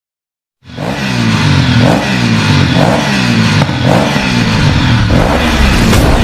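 An engine revving in repeated pulses about once a second. It starts suddenly just after the start and stays loud.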